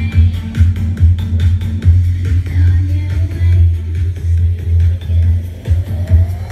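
Bass-heavy electronic dance music played loud through a mini hi-fi system's speakers and heard in the room, with a strong, steady pulsing bass beat.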